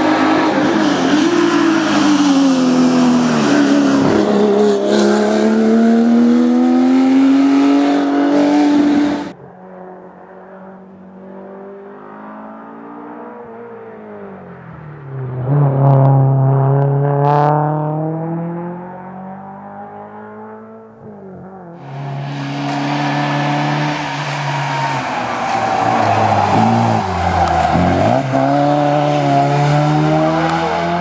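Historic racing cars on a hill climb, engines revving hard as they pass, the pitch rising through each gear and dropping at the shifts. The sound comes in three separate passes: a loud one, a quieter one that builds up about halfway through, and another loud one near the end.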